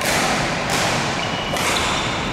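Badminton rackets striking a shuttlecock three times in quick succession during a rally, each crisp hit echoing briefly in a large hall.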